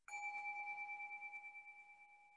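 A meditation bell struck once, ringing with two clear tones that waver quickly as they slowly fade. It sounds the end of a period of silent sitting meditation.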